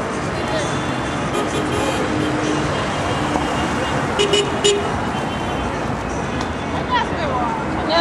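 Busy street traffic: cars driving past with steady road noise, and a short car-horn toot about four seconds in.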